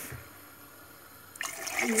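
Water poured from a drinking glass into a pot of soup base, starting about one and a half seconds in after a quiet stretch and getting louder toward the end.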